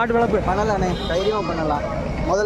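Young goats bleating among people talking.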